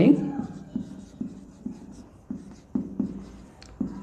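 Marker pen writing on a whiteboard: a series of short scratchy strokes, about two a second, as a word is written out letter by letter.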